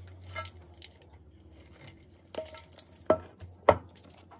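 Metal potato-chip tin being handled and knocked against a countertop: light rubbing, then three sharp knocks in the second half, the last two the loudest, each with a brief metallic ring.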